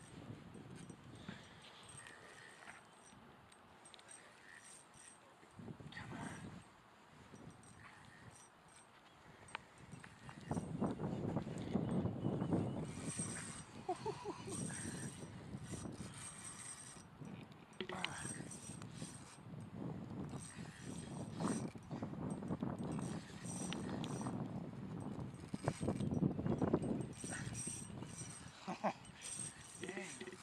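Small spinning reel on an ultralight ice-fishing rod being cranked against a fish, its gears and drag making light clicking and ratcheting sounds. A louder, rough, fluctuating noise comes in about ten seconds in and carries on.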